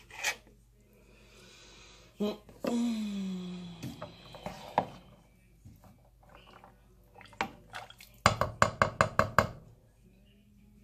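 A utensil knocking quickly against a pot while stirring noodles, with a run of about eight sharp clacks in just over a second near the end. There is a single sharp click at the start.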